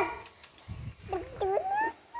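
Short high-pitched voice-like calls that rise and fall in pitch, a few in quick succession in the second half, over some low rumbling noise.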